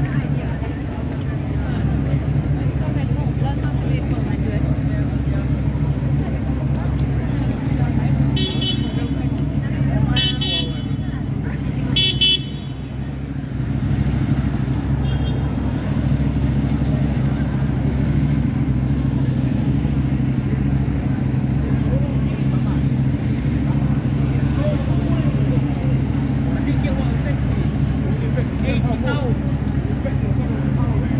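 Busy city street traffic: a steady low rumble of vehicles with people talking. Several short car-horn toots sound between about a third and halfway in.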